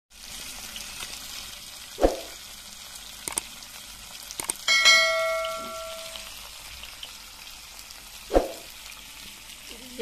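Fish steaks sizzling as they fry in oil in an iron pan, a steady hiss. A bell-like chime rings for about a second and a half near the middle, and two short sharp thuds come about two seconds in and about eight seconds in.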